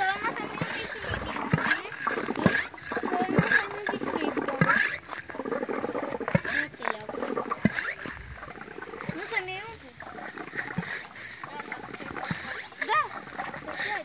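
Air being pumped through a hose into a plastic-bottle water rocket on its launch pad: a string of short hissing strokes, roughly one a second and unevenly spaced, building pressure before launch. Children's voices and squeals sound alongside.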